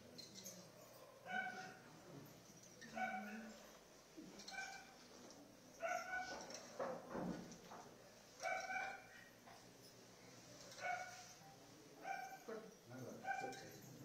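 About ten short, high-pitched yaps from an animal, spaced a second or two apart, faint beneath the low murmur of a gathering.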